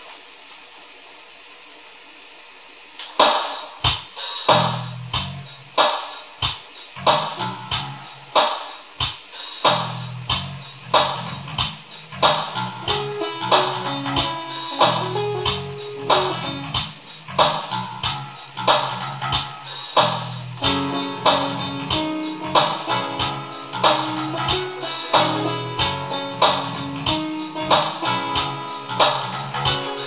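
Electronic keyboard played live over a pre-recorded backing track, starting about three seconds in with a steady beat and bass line; before that only faint room hiss.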